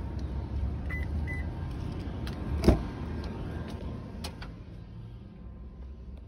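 A 2021 Toyota RAV4's rear passenger door being opened, with one loud latch clunk about midway and several lighter clicks after it. Two short high beeps come about a second in, over a steady low rumble.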